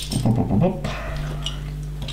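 Loose plastic LEGO bricks clinking and rattling as hands sift through a pile of pieces on a tabletop, over a steady low hum.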